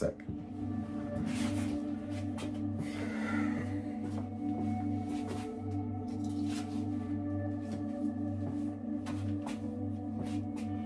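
Ambient background music of steady, sustained droning tones, with a few faint knocks and rustles over it.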